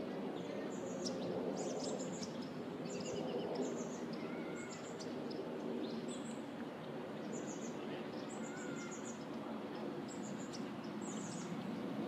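Small birds chirping: many short, high-pitched chirps in quick little clusters, repeating every second or so, with a few fainter whistles, over a steady low background murmur.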